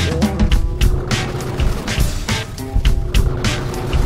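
Background music with a drum beat.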